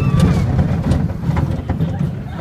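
Low rumble and rattle of a junior roller coaster train running along its track, with a few sharp knocks and wind buffeting the microphone.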